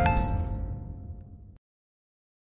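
The closing chime of an intro jingle: a bright ding just after the start with high ringing tones over a low rumble, fading away by about a second and a half.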